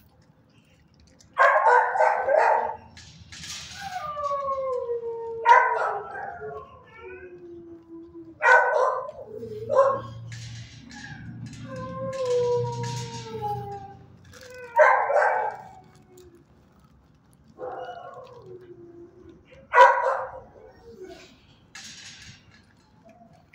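A dog barking and howling: about six sharp barks, several of them trailing off into long howls that slide down in pitch.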